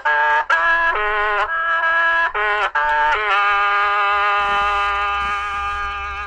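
Hmong qeej, a bamboo free-reed mouth organ, playing a run of short notes with several pipes sounding together. About halfway it settles into one long held note that slowly gets quieter.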